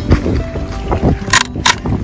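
Silky Katanaboy folding saw cutting through a dry driftwood log, with two short rasping strokes in the second half. Wind rumbles on the microphone throughout.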